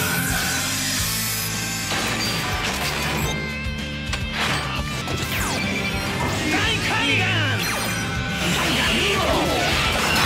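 Action fight-scene soundtrack: background music under crash and impact sound effects, with mechanical clicking. Whooshing, gliding effects come in during the last few seconds.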